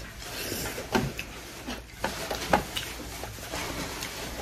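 Close-up eating sounds: chewing and wet mouth smacks from a mouthful of rice and curry eaten by hand, with two sharp smacks about a second in and about two and a half seconds in, over a steady background hiss.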